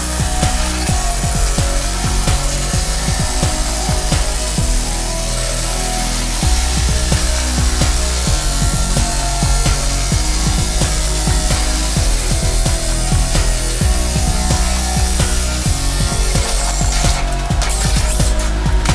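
Cordless drill driving a nibbler attachment, cutting through steel sheet as a steady, dense rattle of punching strokes. Background music with a steady bass runs underneath.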